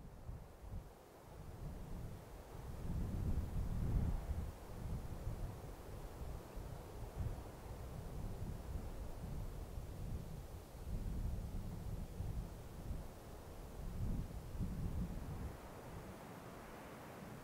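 Wind buffeting the microphone in uneven gusts, a low blustering noise that swells and eases, strongest about four seconds in.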